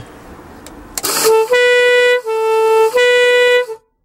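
Homemade air-horn doorbell: two air horns fed by an air compressor sound in turn, high, low, high, after a short rush of air about a second in. The alternating two-tone sounding is loud and stops suddenly near the end.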